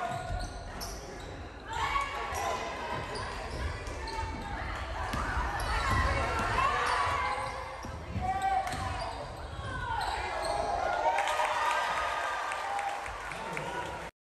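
Live gym sound of a basketball game: a basketball bouncing on a hardwood court, with indistinct voices echoing in the hall.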